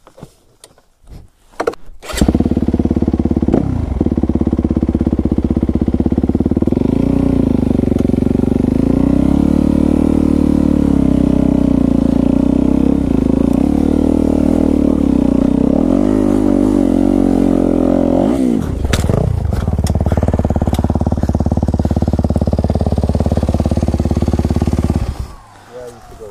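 Yamaha WR250F dirt bike's single-cylinder four-stroke engine starting about two seconds in, then running with rpm rising and falling as the bike is ridden down a rocky trail, and cutting off shortly before the end.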